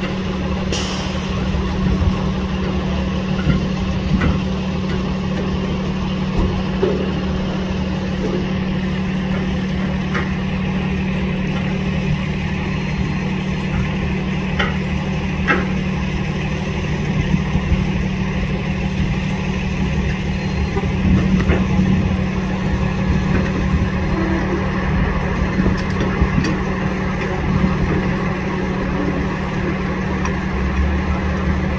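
Large utility truck's engine idling steadily, with a few sharp clicks now and then.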